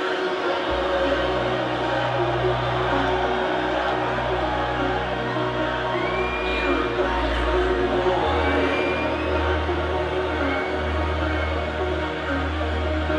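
Electronic dance music in a breakdown: long sustained bass notes under steady synth chords, with no drum beat, the bass moving to a new note about eight seconds in.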